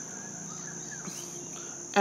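Steady high-pitched background tone, unbroken through the pause in the narration, with nothing else standing out.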